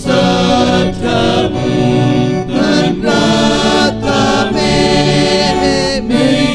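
Small male church choir singing liturgical music into microphones, held notes changing about once a second.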